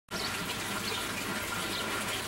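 Water running steadily through an aquaponic grow-bed system, an even rushing hiss with no breaks.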